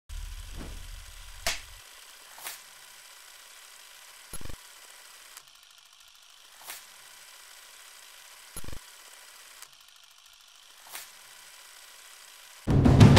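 Quiet designed sound effects for a title and logo sequence: a low rumble in the first two seconds, then a handful of sharp, widely spaced mechanical clicks and short ticks over a faint hiss.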